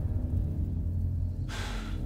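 Film soundtrack with a low, steady drone and a short breath about one and a half seconds in.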